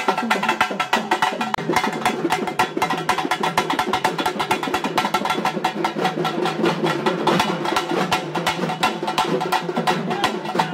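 Traditional festival drums beaten in fast, dense strokes that go on without a break, with steady held tones underneath.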